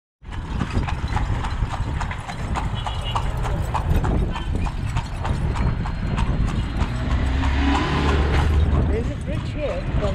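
Carriage horse's hooves clip-clopping steadily on an asphalt road, about three hoofbeats a second, over a low rumble. A voice comes in near the end.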